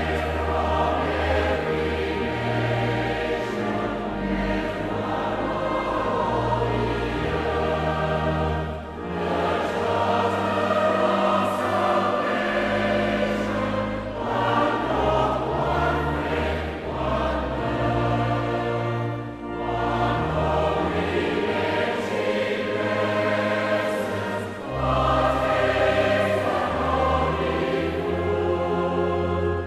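Choir singing a slow hymn over a sustained instrumental bass accompaniment. It moves in long held phrases, with a short break about every five seconds.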